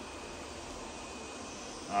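Roborock S8 MaxV Ultra robot vacuum running: a steady whir of its suction fan and brushes, with a faint high whine.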